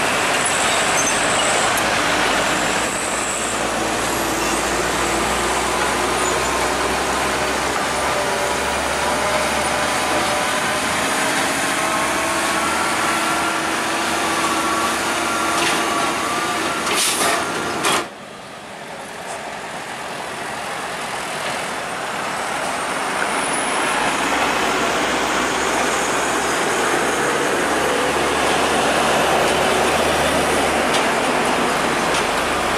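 Heavy diesel trucks driving past close by, their engines working with tyre and road noise. A short air-brake hiss comes about two-thirds of the way through, the sound drops off suddenly, and then it swells again as the next truck approaches.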